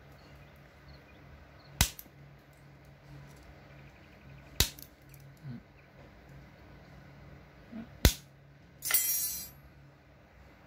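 A small MCC mini bolt cutter with angled jaws snipping wire, three sharp snaps a few seconds apart. Near the end comes a short metallic rattle.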